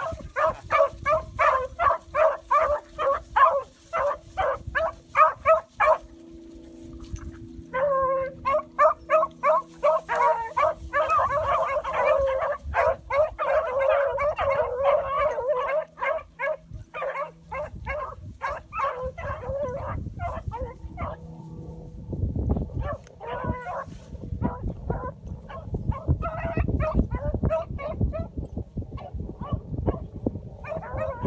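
A pack of beagles baying in chase, several dogs giving tongue at once in steady, rhythmic bawls. The chorus breaks off briefly, then comes back fuller with overlapping voices before thinning out to scattered bays.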